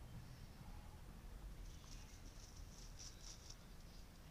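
Near silence with faint outdoor ambience. A run of faint, quick, high-pitched chirps comes in just before the middle and stops shortly before the end.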